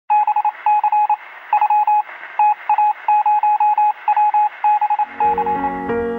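A single electronic tone beeping in quick, uneven groups of short pulses, with a thin telephone-like sound, like Morse code. Piano music comes in about five seconds in.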